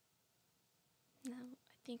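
Near silence for about a second, then a woman's voice: a short sound and the start of speech near the end.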